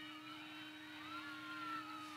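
Faint low-level background: a steady electrical-style hum with a faint motor whine above it that drifts slowly in pitch in the second half.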